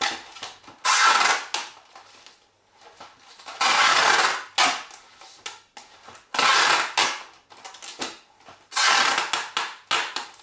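Wide packing tape being pulled off its roll in about four long pulls of roughly a second each, with shorter ones between, as it is wound tightly around two plastic bottles.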